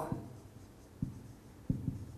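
Marker pen writing on a whiteboard: a few short strokes, one about a second in and a quick pair near the end.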